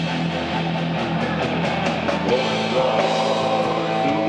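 Live rock band playing an instrumental passage of a Hungarian national rock song: electric guitars, electric bass, keyboards and a drum kit with regular cymbal hits.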